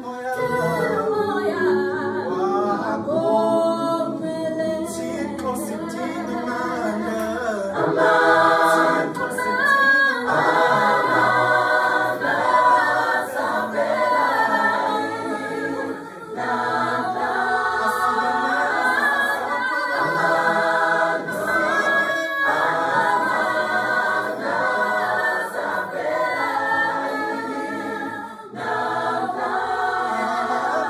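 Mixed choir of men and women singing a gospel song a cappella in harmony, with short breaks between phrases.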